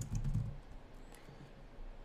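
A few quick keystrokes on a computer keyboard in the first half second, then quieter, with one faint click about a second in.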